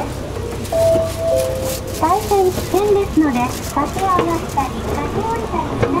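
Japanese public-address announcement on a JR commuter line, a recorded-style request ending "…shinai yō ni onegai shimasu" ("please do not…"), over the low rumble of the train. About a second in, a held tone drops to a lower held tone.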